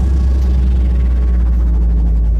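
Background electronic music holding a loud, steady deep bass drone, with faint sustained tones above it.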